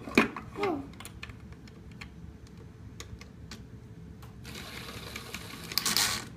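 Battery-powered toy mini drill whirring as it drives a plastic bolt, starting in the last second and a half, after a few light clicks of plastic parts being handled.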